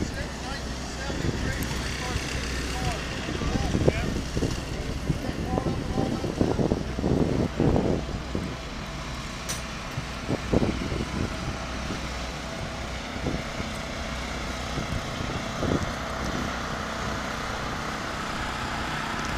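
Indistinct voices of people nearby over a steady low outdoor rumble, the voices coming and going, most of them from about a second in to about eleven seconds in.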